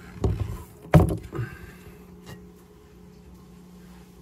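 A few knocks and scuffs of things being handled in a plastic storage bin, the loudest about a second in, then a low steady hum.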